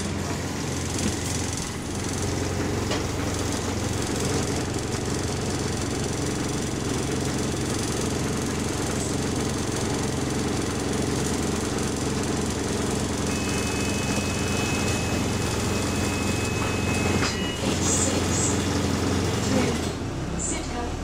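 Bus diesel engine idling with a rattle, heard from inside the passenger saloon. A thin steady high tone sounds over it for a few seconds in the second half.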